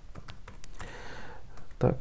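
Computer keyboard keystrokes: a run of light clicks with a soft hiss in the middle, followed by a man's voice near the end.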